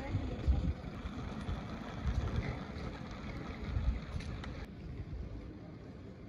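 Wind buffeting the microphone in low rumbling gusts, three stronger surges, over steady outdoor background noise.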